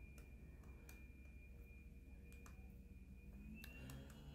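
Near silence: room tone with a faint steady high-pitched whine and a few faint ticks.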